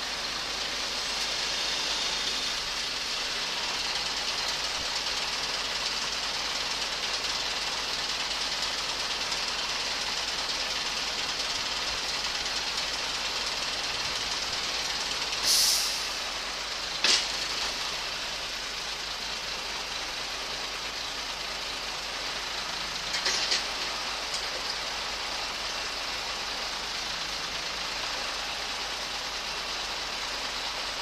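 Truck-mounted crane in use, with the truck's engine and hydraulics running steadily. A short burst of hiss comes past the middle, a sharp click a second and a half later, and a few more clicks later on.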